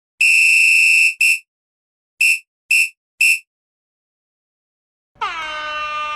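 Electronic buzzer beeps: one long high beep, a short one, then three short beeps about half a second apart. About five seconds in, a held musical note with many overtones begins, its pitch dipping briefly at the start.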